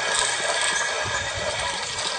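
Hand-turned stone quern grinding grain: a steady gritty rumble of the upper millstone rotating on the lower.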